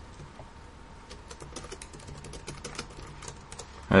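Typing on a computer keyboard: a quick, uneven run of key clicks that starts about a second in.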